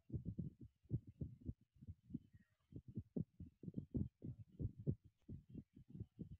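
Faint, muffled low thumps coming irregularly, several a second, over a faint steady hiss.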